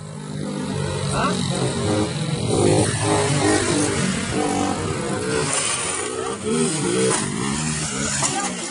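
Motorcycle engine running as the rider holds a wheelie, with people's voices over it.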